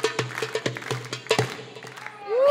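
Darbuka (goblet drum) played by hand: a quick rhythm of sharp strikes mixed with short, deeper ringing strokes, thinning out and getting quieter near the end.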